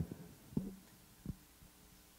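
Two soft, low thumps about three quarters of a second apart over a quiet background: handling noise from a handheld microphone as it is lowered and carried away.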